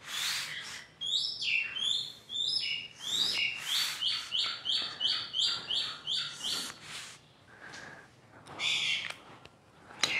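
A bird singing a quick, regular run of short chirps, each sliding down in pitch, for about six seconds. A few short scratchy strokes, marker on paper as lines are ruled, come near the start and toward the end.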